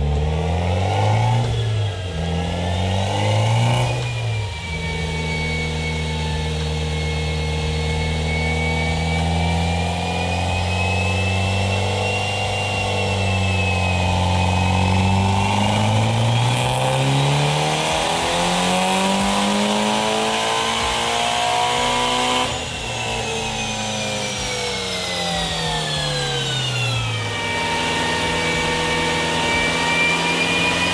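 Mitsubishi Lancer Evolution VIII's turbocharged four-cylinder engine running on an all-wheel-drive chassis dyno, with a high whine that rises and falls with the engine note. The revs rise and fall twice early on, hold steady, climb to a peak about 20 seconds in, then fall away after the throttle eases about 22 seconds in.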